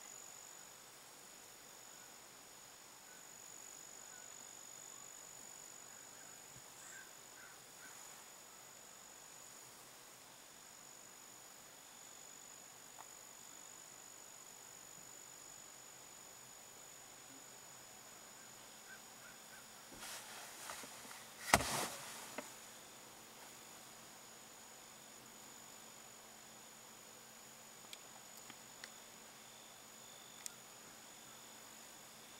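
Faint, steady, high-pitched insect chorus. About two-thirds of the way through, a short rustle ends in one sharp knock, the loudest sound, with a few small clicks near the end.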